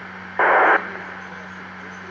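Uniden BC355N scanner receiving a 147.120 MHz FM repeater: a short burst of static about half a second in, the squelch tail as a transmission drops, over a steady low hum.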